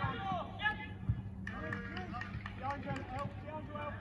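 Indistinct voices of footballers calling out to each other across the pitch during open play, with a few faint knocks and a low steady hum underneath.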